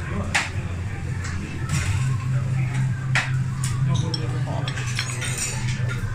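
Restaurant dining-room sounds: cutlery and crockery clinking sharply a few times over a steady low hum and background chatter.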